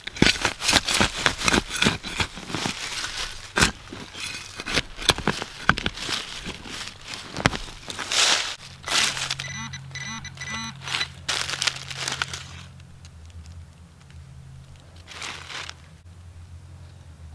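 Hand digger chopping and levering into forest soil and dry leaf litter: a rapid run of crunching cuts and scrapes through the first half, then scattered crunches. Later a low steady hum sets in, with a brief run of quick electronic beeps in the middle.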